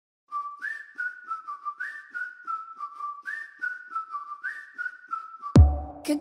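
Whistled melody opening a pop song: a short tune that steps up to a higher note and falls back, repeating, over faint clicks keeping time. Near the end, deep bass and drums come in suddenly and the full backing track starts.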